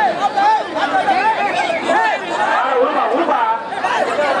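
Chatter of many men's voices talking and calling over one another at once.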